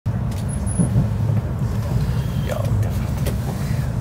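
Steady low rumble of a Shinkansen bullet train running at speed, heard from inside the passenger cabin.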